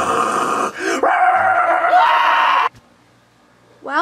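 A dog barking and snarling as it attacks, loud and noisy, cutting off abruptly a little under three seconds in. Faint room tone follows.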